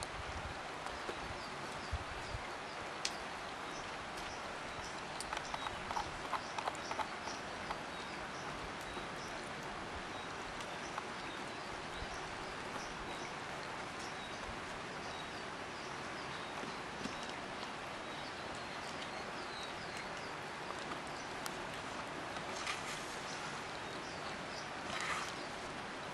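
Outdoor background hiss with faint, high chirps repeating throughout, and a short run of light clicks about five to seven seconds in.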